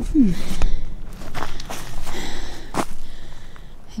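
Footsteps on the leaf-littered dirt of a forest trail, about two steps a second, after a short murmured "hmm" at the start.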